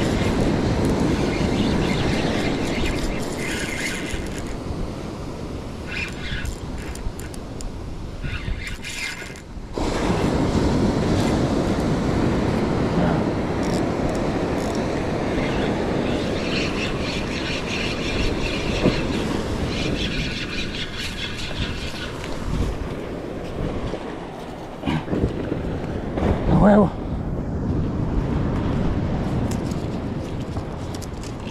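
Wind on the microphone and surf, with several spells of a spinning reel being cranked as line is wound in, a fast fine whirring rattle. Near the end comes a brief pitched sound, the loudest moment.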